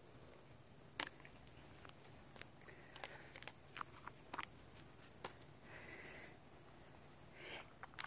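Faint scattered clicks and light taps of a lidded plastic cup being handled and a straw pushed in through the lid, with a couple of soft brief rubs in the second half.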